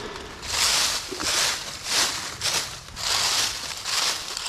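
Dry fallen leaves rustling and crackling as hands sweep and scoop through the leaf litter, in a string of short bursts.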